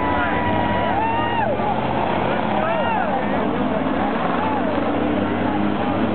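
Race car engines running on a speedway track, rising and falling in pitch, mixed with voices from the crowd in the stands.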